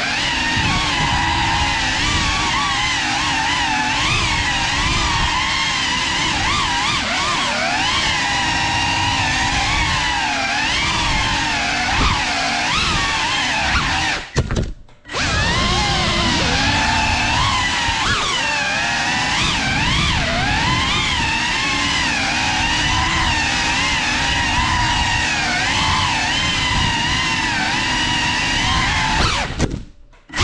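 Small ducted FPV cinewhoop drone (GEPRC CineLog35) flying, its motors and propellers whining with a pitch that rises and falls as the throttle changes. About halfway through the sound cuts out for half a second, then resumes.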